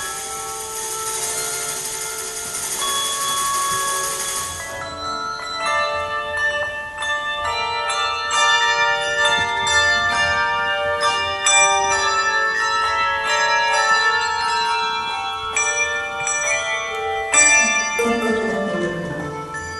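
Handbell choir playing a tango: many handbells ringing chords and melody, with castanets and tambourine marking the rhythm. It opens with held chords under a sustained high shimmer, then breaks into short, crisp rhythmic strokes.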